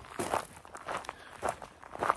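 Footsteps of a person walking on a dirt road, about two steps a second.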